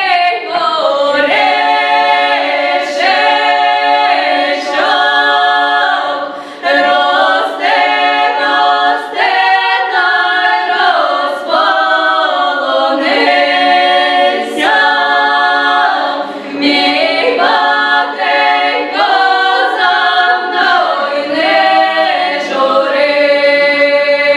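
Five young women singing a traditional Ukrainian folk song unaccompanied, as a group in several voices, with brief breaks between long held phrases.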